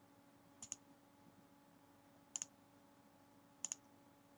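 Computer mouse button clicked three times, each a quick press-and-release pair of faint sharp clicks, over a faint steady hum.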